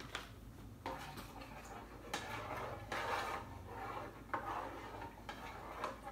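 Kitchen containers and utensils being handled on a countertop: a handful of separate knocks and clatters, roughly a second apart.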